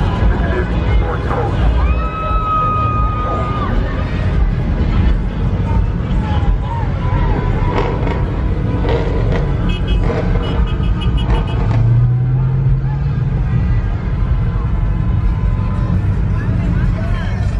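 Car engines and exhausts running in slow, crowded traffic, mixed with voices and music. A car horn sounds as one steady tone for about two seconds near the start, and an engine drones louder for about two seconds near the end.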